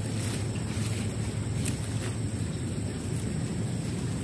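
Steady low rumble of wind on the microphone, with a couple of faint sharp snips as sweet potato vines are cut with scissors.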